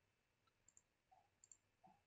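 Near silence, with a few faint, short clicks.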